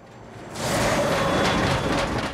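A heavy truck passing by fast on a road: a loud rush that swells about half a second in and starts to die away at the end.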